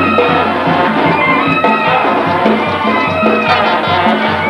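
A brass band playing a lively tune, horns carrying the melody over a steady, evenly pulsing bass line and drums.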